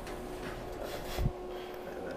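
Faint steady hum inside an elevator car standing with its doors open, with a brief rustle and a soft low thump a little past one second in.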